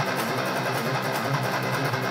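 Distorted PRS electric guitar, recorded direct through the Poulin LeCto amp-simulator plugin and a cabinet impulse response, playing a fast, rapidly picked metal riff.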